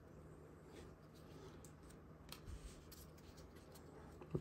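Near silence, with faint soft clicks and rubs of paper trading cards being slid and turned over in the hands.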